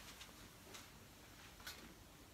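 Near silence in a small room, broken by three or four faint, short clicks and taps as a person moves about and handles things.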